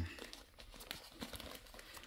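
Faint rustling and crinkling of paper packing and a small cardboard box being handled and opened, with a few light ticks.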